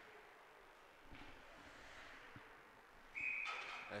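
Faint ice-rink ambience with a few light knocks, then a short, high, steady tone about three seconds in.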